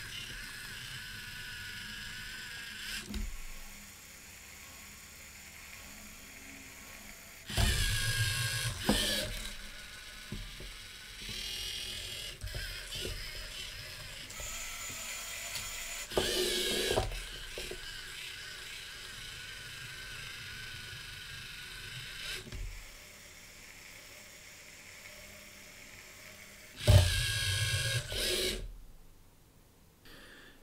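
LEGO Mindstorms EV3 robot's electric motors and plastic gear trains whirring as it drives along a line-following course, a steady high whine with three louder bursts of motor noise, at about eight, sixteen and twenty-seven seconds in.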